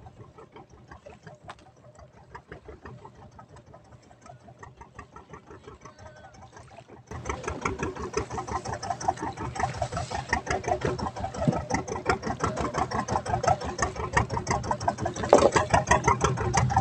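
A small fishing boat's engine running steadily with a fast, even chugging. It becomes much louder suddenly about seven seconds in.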